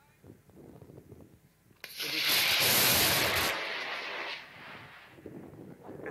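Arguna 1 amateur rocket's motor igniting and launching from its tower: a sudden loud rushing hiss starts about two seconds in and dies away over the next two to three seconds as the rocket climbs out of earshot.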